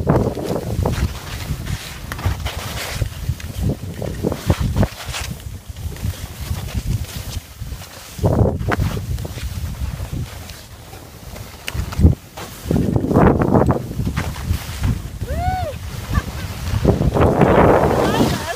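Skis scraping and hissing over snow during a downhill run, with wind buffeting the microphone, swelling louder in several turns. A laugh at the start, and a short rising-then-falling tone about three-quarters of the way through.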